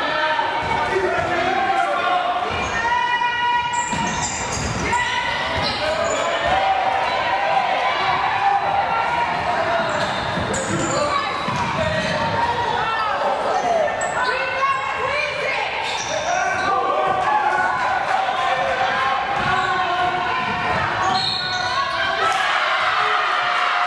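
A basketball bouncing on a hardwood gym floor during play, with indistinct shouts from players and spectators echoing through the large gym.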